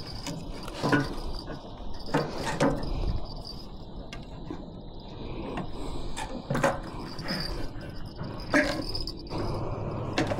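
Scattered knocks and rattles from handling a freshly landed gafftopsail catfish and a landing net on a dock's deck, a few sharp ones standing out. A steady high chirring of insects runs underneath.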